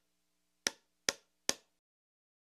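Three sharp taps, each with a brief ring, a little under half a second apart, in time with the channel logo's letters appearing: a logo sound effect.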